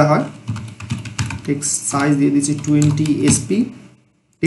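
Typing on a computer keyboard: a run of quick keystroke clicks as a line of code is entered.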